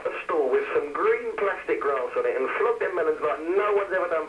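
Men talking over a telephone line, the voices thin and narrow in pitch range, with no other sound standing out.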